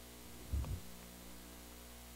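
Steady electrical mains hum, with one low, muffled thump about half a second in.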